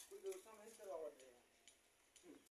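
Faint voices talking in the background for about the first second, then near silence with a few faint ticks.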